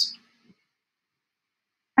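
A woman's voice ends a word with a short hiss, then near silence: room tone.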